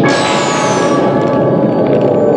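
Horror film soundtrack effects: a sudden bright crash at the start that fades over about a second, with a high falling whistle, over a continuous dense rumble and steady ringing tones.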